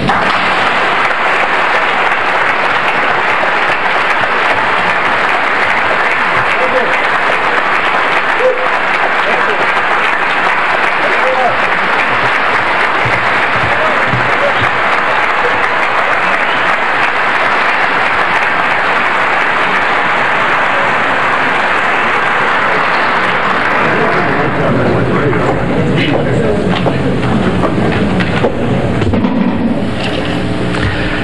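Audience applause, steady and sustained, dying away near the end as voices come through.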